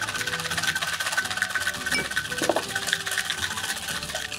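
Ice rattling inside a metal cocktail shaker tin, shaken hard in a fast, steady rhythm to chill and combine a martini's ingredients.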